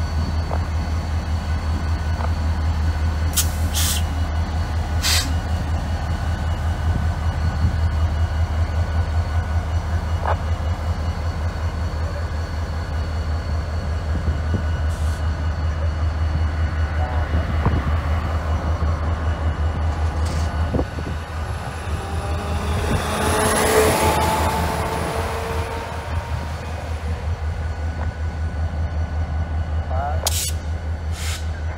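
Florida East Coast Railroad diesel locomotive engine running with a steady low, pulsing rumble. A few sharp metallic clanks come a few seconds in. A louder swell of noise with a faint whine rises and falls about 24 seconds in.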